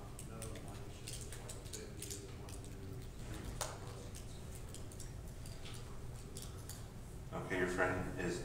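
Faint speech from across a room with scattered small clicks and taps; a closer, louder voice starts near the end.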